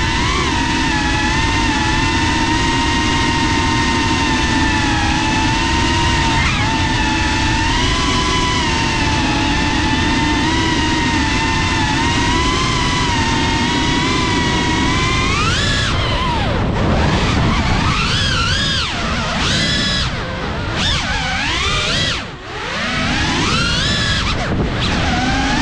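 FPV quadcopter's electric motors and propellers whining over rushing wind, picked up by the onboard GoPro. The whine holds steady for the first half, then swoops up and down sharply several times with throttle changes, dropping away briefly near the end as the throttle is cut.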